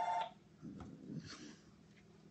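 Telephone ringing: a steady electronic two-tone ring that cuts off about a quarter of a second in, followed by faint low murmuring.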